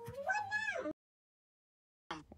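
A high, meow-like voiced call that rises and falls in pitch twice, cut off abruptly about a second in, followed by dead silence.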